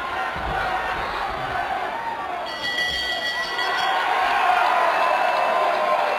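Boxing crowd shouting and cheering. About two and a half seconds in, a bell rings with a steady ringing tone and dies away, ending the bout, and the cheering swells after it.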